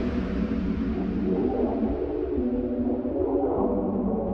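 Bass house music in a breakdown: held synth chords over a steady deep bass, with no drums, while the treble is gradually filtered away.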